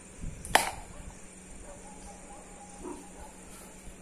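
An empty quarter bottle of whisky thrown away, landing with one sharp knock about half a second in. A faint thin steady tone follows for about a second and a half.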